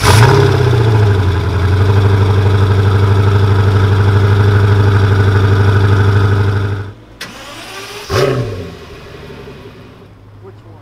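A Koenigsegg Agera's twin-turbo V8 catches with a flare and settles into a loud, steady idle. About seven seconds in, the sound cuts off abruptly, followed by a click and a short engine blip.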